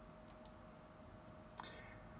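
Faint computer mouse button clicks: a quick pair near the start and a sharper single click near the end, over a faint steady hum.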